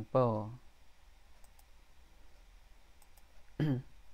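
A few faint, sharp clicks in a pause between short bursts of a man's speech.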